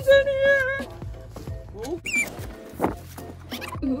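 A woman's long, drawn-out excited "ooh" held on one pitch, followed by quieter short high squeals and exclamations.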